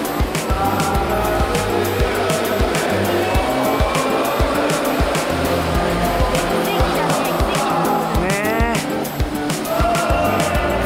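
Voices singing inside a sea cave, with held notes throughout and one voice sliding up in pitch about eight seconds in.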